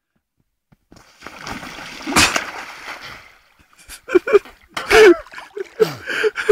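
A person sliding down a foam mat and plunging into shallow river water: a rushing splash that builds from about a second in, with one loud smack about two seconds in, then water settling.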